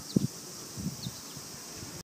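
Steady high droning of cicadas in the trees, with a brief low thump about a quarter second in.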